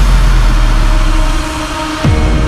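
Electronic dance track transition: a dense noise wash over a deep sub-bass rumble, with no vocals, which thins out about a second and a half in before a new hit at the end.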